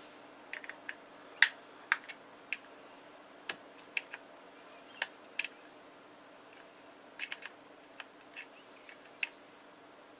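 Small pry tool clicking against the retaining clips of a Motorola MTS2000 radio's body as they are worked loose: irregular sharp clicks and small snaps, the loudest about one and a half seconds in.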